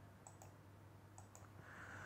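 Near silence with a few faint clicks: one about a quarter second in and two close together just after a second in.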